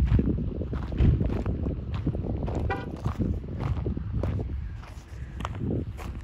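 Footsteps on gravel with the knocks and rumble of a hand-held phone being jostled while walking. A brief high chirp sounds near the middle.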